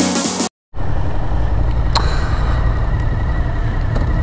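Electronic music stops abruptly about half a second in. After a short gap, a motorcycle engine idles with a steady low rumble, and there is a single sharp click about two seconds in.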